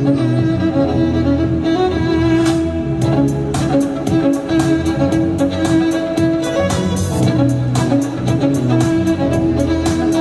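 Solo violin playing a sustained melody over a recorded backing track with a bass line, and a steady beat coming in about three seconds in.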